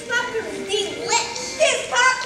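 Children's voices calling out, several overlapping at once.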